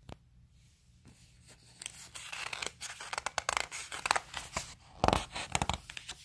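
Paper pages of a picture book being turned and pressed flat, rustling and crackling. The sound builds from about two seconds in and is loudest near the end, after a single soft click at the start.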